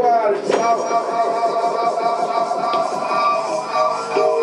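Amplified instruments hold a steady chord of several sustained tones, a live band's drone between songs.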